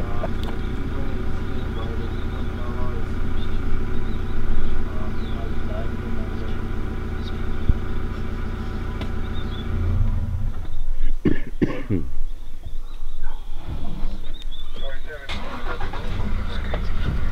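Safari vehicle engine idling steadily, cutting out about ten seconds in. After that come irregular knocks and rustles, and a low engine sound returns near the end.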